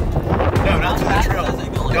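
Wind buffeting the microphone of a moving open-sided golf cart, a steady low rumble, with passengers' voices talking over it.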